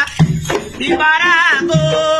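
Lucumí chant calling Eleguá: a solo voice sings a wavering, bending phrase and then holds a note, over batá drum strokes.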